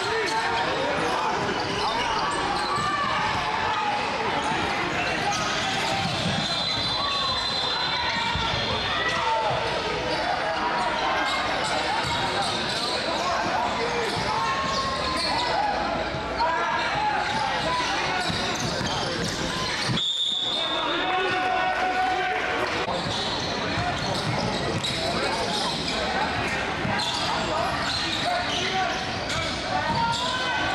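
Basketball game sound in a large gym: many overlapping voices of players and spectators, with a basketball bouncing on the hardwood court. There is a short break in the sound about two-thirds of the way through.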